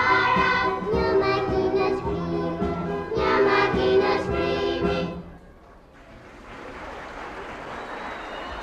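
A children's choir and a girl soloist singing with an orchestra, closing on a held final chord that stops about five seconds in. A quieter, even wash of noise then swells slowly.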